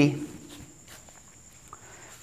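A few faint footsteps as a person steps away from a whiteboard, over quiet room tone with a thin, steady high-pitched whine.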